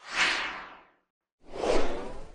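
Two whoosh sound effects from an animated logo sting. The first sweeps in at once and fades within a second. The second swells about a second and a half in and is the louder of the two.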